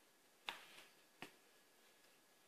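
Two small sharp snaps, about three-quarters of a second apart, from hands tying hair up into a ponytail, against near silence.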